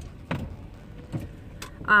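Car keys with a remote-start fob being handled: a few light clicks and a soft knock over the low hum of the car's cabin.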